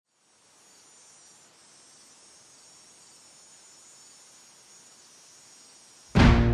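Faint chorus of crickets, a steady high-pitched trill that fades in about half a second in.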